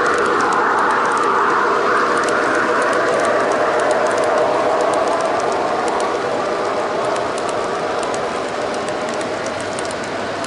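G scale model freight cars rolling past on garden railroad track: a steady rolling noise with a run of light, quick clicks as the wheels cross the rail joints. It eases a little in the last few seconds.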